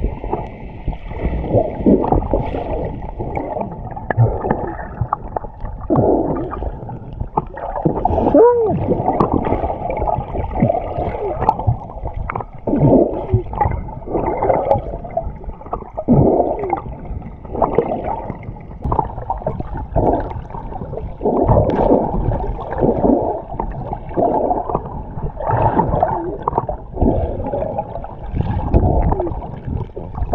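Water heard underwater through a submerged camera: muffled churning and bubbling that surges irregularly every second or two as the swimmer strokes, with an occasional short bubbling glide.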